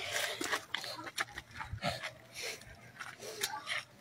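Scuffing, rustling and scattered clicks of people shifting about and kneeling down on the ground, with handling noise on the phone microphone.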